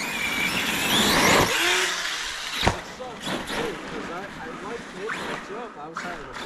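Arrma Kraton 6S RC truck's electric motor whining up in pitch as it accelerates, with a rush of tyres spinning on icy pavement, then a single knock a little before three seconds in.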